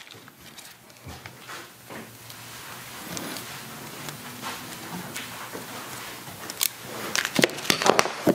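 Quiet handling of plastic wrapping and a charger cable: soft rustling, then a few sharper crinkles and taps near the end.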